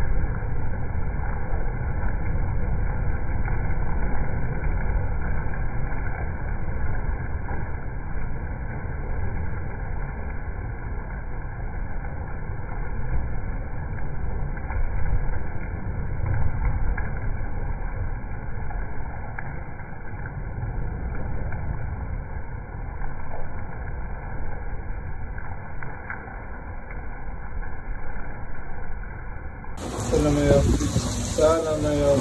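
Thunderstorm noise: a deep, steady rush of wind and rain that swells and eases slightly, with no single loud crack standing out.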